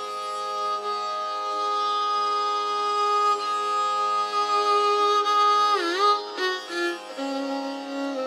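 Carnatic violin playing a slow raga phrase: one long held note, then a quick dip-and-return ornament (gamaka) about six seconds in and a few short notes, settling on a lower note near the end, over a steady tanpura drone.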